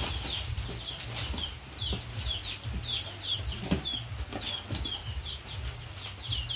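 Chicks peeping over and over, short high falling peeps about two to three a second. A few light knocks and rustles from handling bags and school supplies, over a low rumble.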